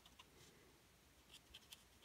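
Very faint scratching of a Stampin' Blends alcohol marker's tip on card stock as it colours, a few soft strokes against near silence.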